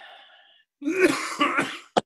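A person coughing mid-sentence: a rough burst about a second long with two or three pulses, followed by a sharp click.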